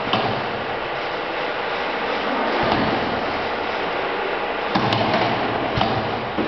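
OCTOPUS automatic carousel screen printer running: a steady mechanical noise with a few knocks and clunks, loudest in a cluster about five seconds in.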